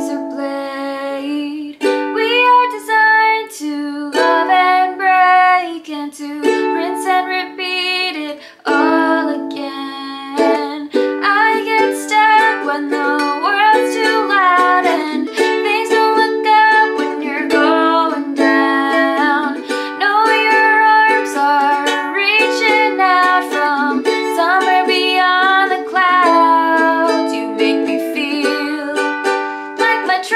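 A woman singing a pop song to her own strummed ukulele accompaniment.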